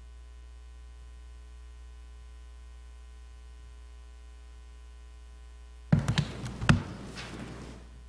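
Steady electrical mains hum from the room's sound system. About six seconds in comes a short cluster of loud knocks and bumps as someone sits down at the front table.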